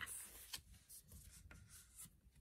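Faint rustle of a sheet of white paper being folded in half and the crease pressed flat by hand: a few soft rubbing strokes.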